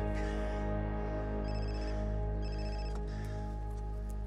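A mobile phone ringing: two short, high-pitched rings about one and a half and two and a half seconds in, over sustained background music.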